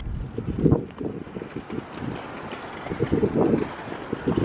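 Wind buffeting a handheld camera's microphone while walking outdoors: an uneven low rumble that swells in gusts, strongest about a second in and again near the end.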